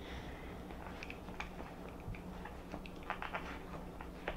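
Faint clicks, then a short run of scrapes about three seconds in, as a metal ice cream scoop digs into softened ice cream in a carton, over a low steady hum.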